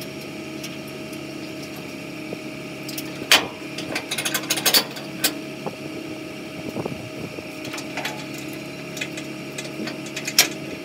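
Diesel pickup idling steadily, with sharp metallic clinks and clanks of hitch chains being handled at the gooseneck coupler: one loud clank a few seconds in, then a quick run of clinks about a second later.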